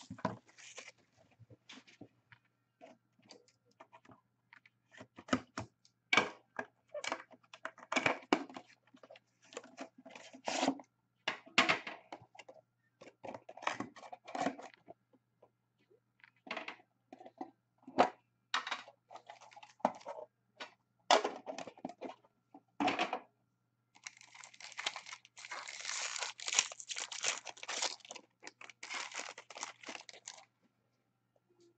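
Plastic shrink wrap crinkling and tearing as a sealed Upper Deck Premier card tin is unwrapped, with scattered clicks and knocks from the tin being handled. A longer, denser spell of crinkling comes near the end.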